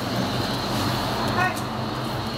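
Steady city street traffic noise with a vehicle engine running low underneath, and one brief high-pitched sound about a second and a half in.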